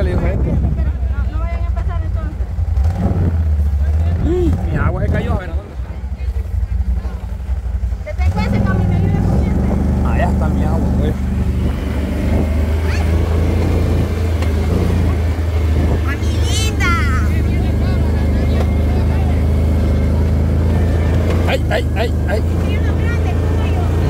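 ATV (quad bike) engine running steadily, with a low, even drone heard from aboard the machine; it grows fuller about eight seconds in.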